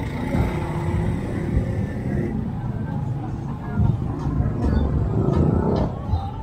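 Street ambience: an uneven low traffic rumble with people's voices mixed in.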